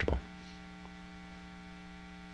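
Steady electrical mains hum with a stack of even overtones, a low continuous buzz under the recording with no other sound once the voice stops.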